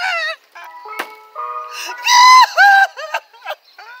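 A man wailing in exaggerated, drawn-out sobs, loudest about two seconds in. Between the sobs, about half a second in, a steady electronic tune from a passing ice cream cart sounds for about a second.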